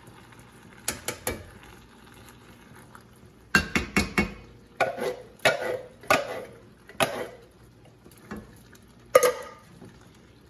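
A large tin can of crushed tomatoes emptied into a white enamelled pot: about a dozen sharp metallic knocks and clanks as the can is rapped and scraped out over the pot, two light ones about a second in and a louder run from about three and a half seconds on.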